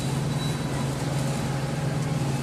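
Steady low machine hum with an even background hiss, without breaks or distinct knocks: the running drone of deli-counter equipment.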